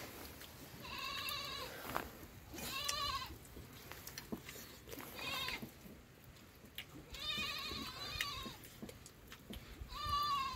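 Sheep bleating: about five high, wavering bleats, each under a second, coming every couple of seconds.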